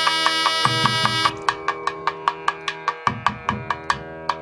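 Devotional ritual music: sustained melodic tones over a steady drone, driven by a fast, even beat of sharp drum strokes at about four to five a second. A little over a second in, the bright upper part of the melody drops away and the drum strokes stand out more.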